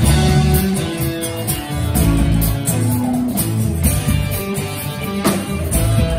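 Live band playing an instrumental intro: guitars with a melodic lead line over electric bass and a drum kit, with a drum hit about five seconds in.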